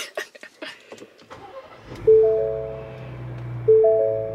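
Ford Bronco's warning chime sounding twice, a two-tone chime about a second and a half apart, over the low steady hum of the engine idling at around 1,200 rpm. A few light clicks come before the engine hum begins.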